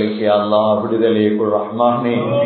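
Speech only: a man preaching into a microphone, his voice running on without a break.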